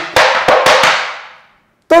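Tap shoes' metal taps striking a wooden tap board in a quick run of about six taps within the first second, each one sharp, with a short ring fading after the last.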